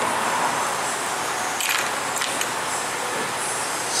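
Steady background hiss, with a couple of short scraping clicks a little before halfway as hands pry at the plastic housing of a car's air-conditioning evaporator box to free it.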